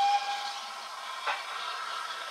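Steam hissing steadily from the Flying Scotsman, an LNER A3 Pacific steam locomotive. A brief high tone sounds at the very start, and there is a single short knock a little over a second in.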